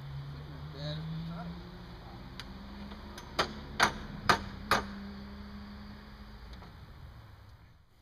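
Four sharp, ringing hammer blows on the geodesic dome's strut frame, about two a second, over a steady low hum.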